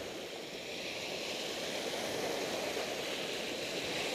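Surf breaking and washing up the beach: a steady rush of waves and foam that swells slightly about a second in.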